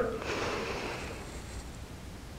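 A woman's slow in-breath: a faint hiss of air that fades out after about a second and a half.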